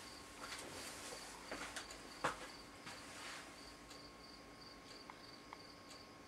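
Faint, even high-pitched chirping, a short pulse repeated about three times a second, like an insect. In the first half there are soft knocks and rustling from a person moving about, the loudest a single knock a little over two seconds in.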